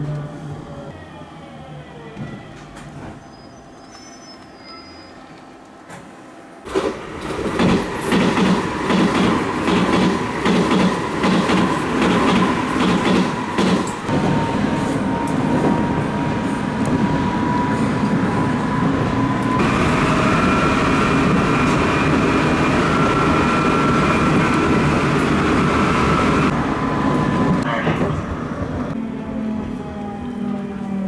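Electric local train heard from inside the carriage. It is fairly quiet at first with a whine sliding in pitch, then about seven seconds in it is suddenly loud, running fast with rapid rail clicks and a steady whine. Higher whine tones join for several seconds in the middle.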